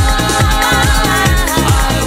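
Early-1990s eurodance music from a continuous DJ mix: a steady kick drum about two beats a second under synth lines.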